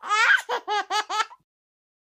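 A young child laughing: a loud opening burst, then four short high 'ha' syllables, stopping about a second and a half in.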